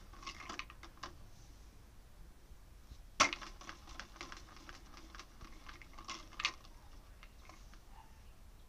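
Plastic drinks bottle of a homemade treat dispenser spinning on its bamboo rod, with dry treats rattling inside: a run of quick clicks and taps, and two louder knocks, one about three seconds in and one past six seconds.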